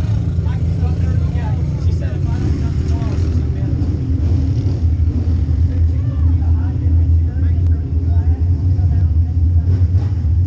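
Pure stock race car engine idling steadily as a loud, even low rumble, with voices talking faintly in the background.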